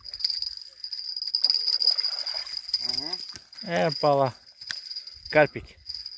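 A hooked fish splashing at the water's surface as it is pulled in through the shallows and up the bank, over a steady high-pitched drone of insects.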